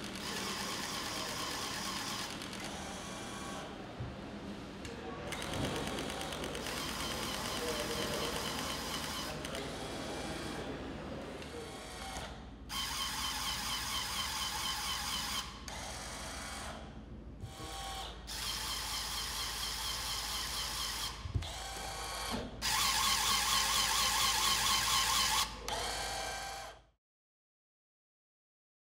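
Small electric motors in gadget prototype mechanisms, whirring and whining in bursts that start and stop several times, with a couple of sharp clicks or knocks.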